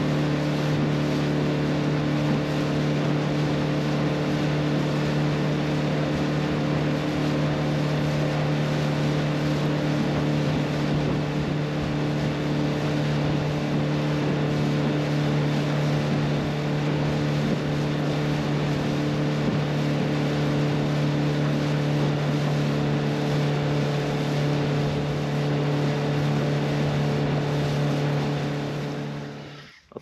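Outboard motor running steadily at trolling speed, a constant low engine note with water rushing past the hull. It fades out near the end.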